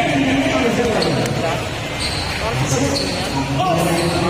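Spectators in a crowded basketball gym talking and shouting, with a basketball bouncing on the court.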